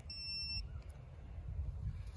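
Klein Tools 935DAA digital angle finder giving one short electronic beep, about half a second long, over a low background rumble.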